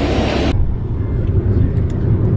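A loud steady hiss cuts off abruptly about half a second in, replaced by the steady low rumble of a moving car heard from inside the cabin.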